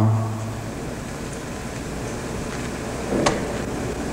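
Steady background hiss and low hum of an old TV interview recording, with a single faint click a little over three seconds in.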